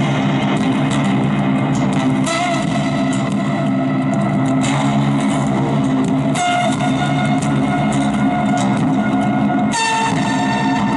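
Solo amplified Ovation-style round-backed acoustic-electric guitar being played, with sustained low notes and sharp accented strokes every second or two.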